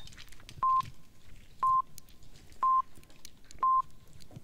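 Radio hourly time signal: four short electronic pips of one pitch, a second apart, counting down to the hour. They lead into the long final pip that marks the top of the hour.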